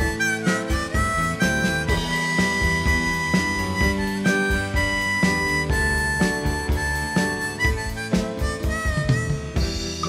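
Harmonica solo over a band backing of electric guitar and drums, the harmonica holding long notes with some bent pitches.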